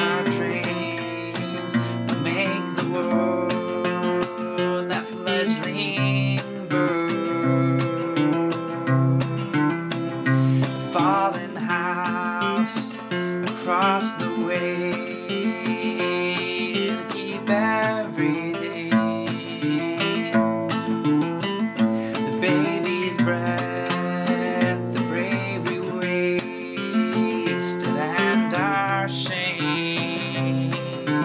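Acoustic guitar with a capo, strummed and picked in a slow folk accompaniment, with a man's voice singing over it at times.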